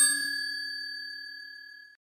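A bell-like ding sound effect, the chime of a subscribe animation's notification bell. It is struck just before and rings on with several pitches, fading steadily until it dies away just before the end.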